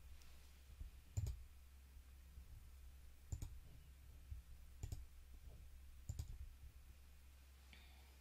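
Four light clicks with soft knocks, a second or two apart, over a faint steady low hum: small objects being handled and set down on a table close to the microphone.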